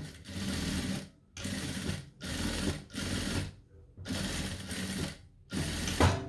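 Jack industrial sewing machine stitching denim scraps, run in a series of short bursts of about half a second to a second each, with brief stops between them.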